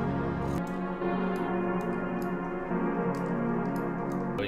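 Dark, sustained synth string-pad chords from an Xpand!2 preset playing back, reversed and half-timed, changing chord about half a second in and again near three seconds; faint high ticks sit over the pad.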